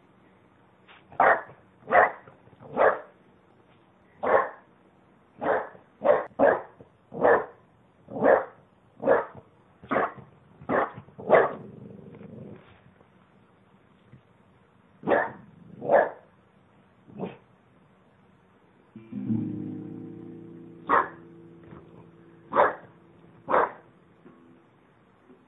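French bulldog barking at a guitar in short, sharp, separate barks, about a dozen in the first eleven seconds and a few more after a pause. About nineteen seconds in, a guitar chord is strummed once and rings out while the dog barks three more times.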